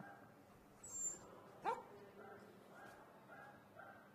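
A small dog gives one short, faint yip, its pitch sweeping sharply upward, about a second and a half in, with a brief high squeak just before it.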